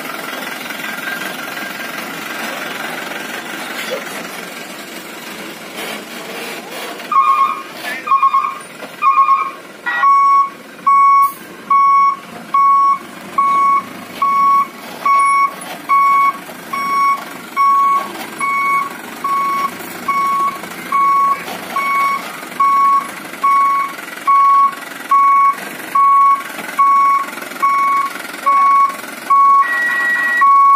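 Dump truck's reversing alarm beeping: one steady tone repeated evenly, a little faster than once a second. It starts about seven seconds in, first a few uneven beeps, then a regular rhythm while the truck backs up.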